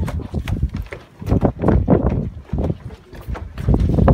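Footsteps of several people climbing wooden stairs and crossing a wooden deck: a quick, uneven run of knocks and scuffs on the boards.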